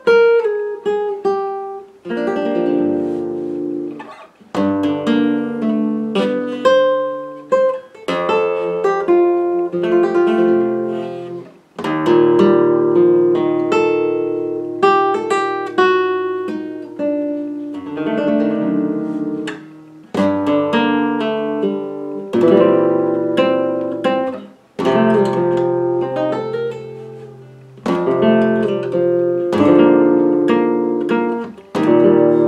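Flamenco guitar playing a rondeña in its scordatura tuning (sixth string a whole tone down, third string a half tone down, capo at the first fret): phrases of plucked chords and arpeggios over ringing low bass notes, each phrase dying away before the next begins.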